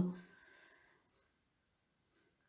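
A woman's voice trails off in the first moment, then near silence.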